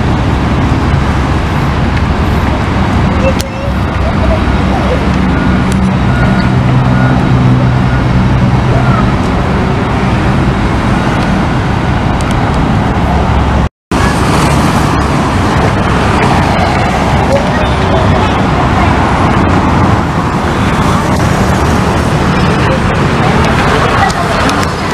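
Steady city street traffic noise, with a vehicle engine's low hum standing out for a few seconds about a quarter of the way in. The sound cuts out for a moment just past halfway.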